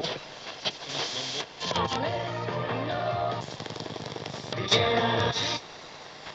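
Audio Crazy AC-RC86BT boombox radio being tuned by hand: short snatches of music and static come and go as the dial moves across stations, played through its small mono speaker. It drops quieter near the end.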